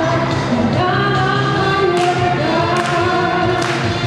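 A woman's voice, amplified through a microphone, singing over loud backing music, with sustained sung notes and other voices joining in. The music has a few sharp percussive hits in the second half.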